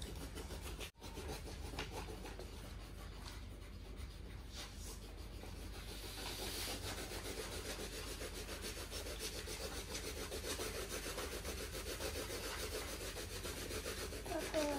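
Coloured pencils scratching on paper as several children colour, a steady run of quick small strokes. The sound cuts out briefly about a second in.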